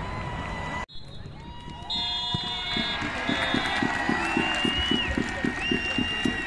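Referee's pea whistle blowing short blasts for full time from about two seconds in, over crowd noise. A steady run of low thuds about three a second runs underneath, and the sound drops out briefly about a second in.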